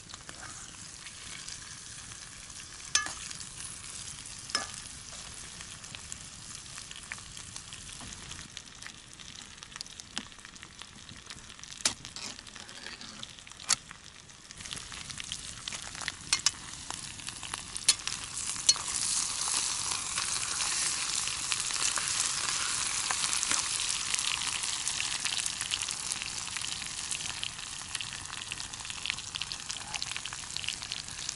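Potatoes frying in a small pan over embers, with a steady sizzle that grows louder about halfway through. A spoon stirs the pan, making a few sharp clinks against it early on.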